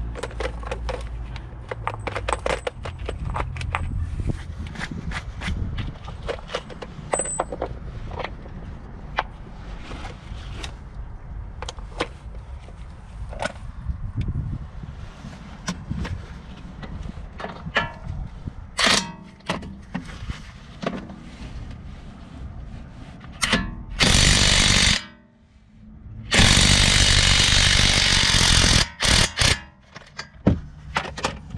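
Tenwa half-inch cordless brushless impact wrench hammering on a 19 mm socket on a suspension bolt, in two loud bursts near the end, the first about a second and a half long and the second about two and a half seconds, with a short break between. Before that come scattered clicks and knocks.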